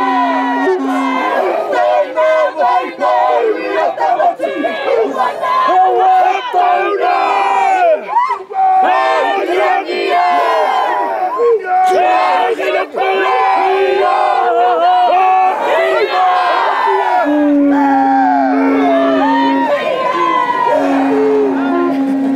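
Group of Māori performers chanting and shouting a haka in unison, many loud voices with sharp rhythmic calls and cries.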